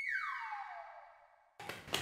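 Comic sound effect: an electronic tone sliding steadily down in pitch and fading away over about a second and a half, over a held high note, cut off abruptly.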